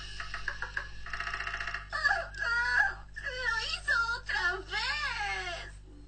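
Band music for about the first two seconds, then a cartoon girl's voice wailing without words in long swoops up and down in pitch.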